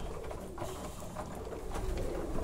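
Domestic pigeons cooing while they feed, with small taps of pecking at the feeder.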